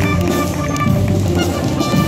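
Marching band playing a tune on brass and saxophones as it marches past, held chords changing every half second or so.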